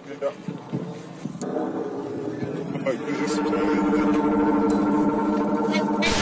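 A passage of an electronic DJ mix: voice-like sampled fragments and found sound, then a sustained droning chord that swells steadily louder.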